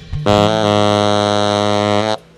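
Tenor saxophone holding one long, low note, steady in pitch, entering about a quarter second in after a brief gap.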